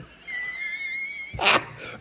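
A high, thin whine held for about a second, then a short breathy burst.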